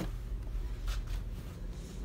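Light handling noise and a few soft knocks from a phone and handheld meter being carried, over a steady low hum.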